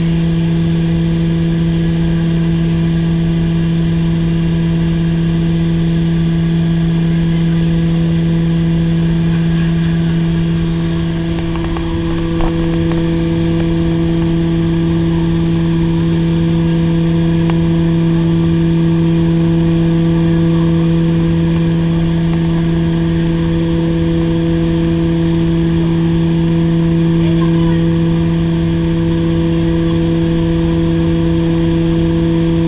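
Steady, loud drone of the Short SC.7 Skyvan's twin turboprop engines and propellers heard inside the cabin in flight, a constant low hum with a few steady tones. It dips slightly for a moment about twelve seconds in.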